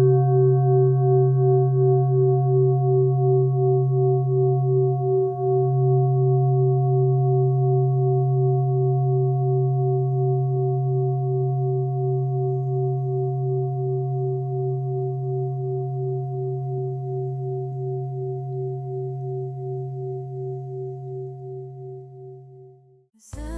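A singing bowl ringing on after a single strike: one long, wavering tone with a steady pulse that slowly fades away, dropping off near the end.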